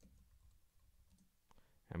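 A few faint computer keyboard and mouse clicks in near silence, with a voice starting just at the end.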